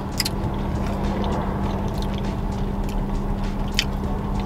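Someone chewing a sticky jalebi, with a couple of soft mouth clicks, over a steady low hum in a car cabin.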